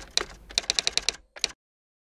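Typewriter keystrokes as a sound effect: a few clacks, then a quick run of about eight, and one last strike about a second and a half in.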